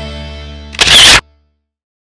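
The last held chord of the background rock music fades out. About a second in comes a loud, short camera-shutter sound effect, cut off sharply.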